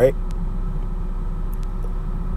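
A steady low rumble with a faint hum runs through a pause in speech, unchanging in level, with a few faint ticks.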